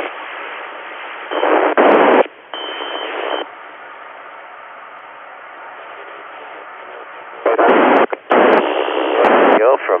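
FM amateur-satellite downlink (SO-50) received on an Icom IC-9700: a steady hiss of FM noise, broken near the start and again from about 7.5 to 9.5 seconds by loud bursts of garbled, broken-up transmissions. One short burst carries a brief steady high tone.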